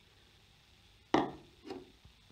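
A measuring cup knocked down onto a wooden tabletop: one sharp knock about halfway through, then a softer thud just after.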